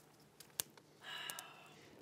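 Near-quiet room tone with a single sharp pop from a burning wood fire about half a second in, then a faint, brief sound about a second in.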